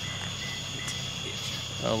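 Steady, unbroken chorus of night insects such as crickets, a high buzzing trill. A short spoken 'Oh' comes near the end.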